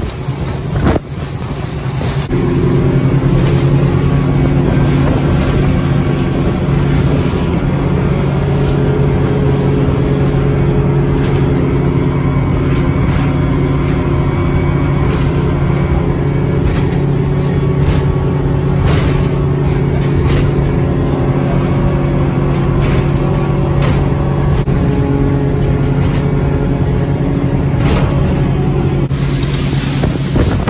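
Motorboat engine running steadily at speed, a constant low drone that sets in about two seconds in. Wind on the microphone and the rush of water from the wake run under it.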